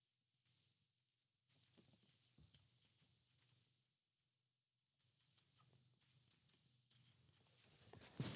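Marker squeaking on a glass lightboard as a word is written: quick runs of short, high chirps, in two runs with a brief pause about four seconds in.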